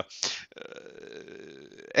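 A man's brief hesitant "uh" at the start, then a pause holding only a faint steady hum.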